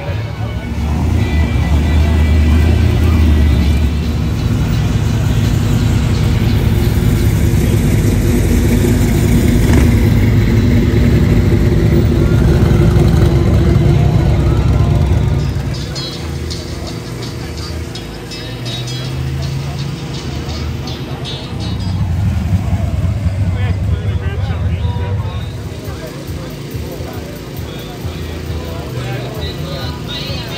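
Car engines running low and steady as show cars drive slowly past, loudest for the first half and again briefly later on, with people talking in the background.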